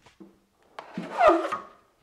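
Steel drywall trowel scraped across a hawk loaded with joint compound: one rasping scrape about a second long, with a squeal that slides down in pitch, after a light knock near the start.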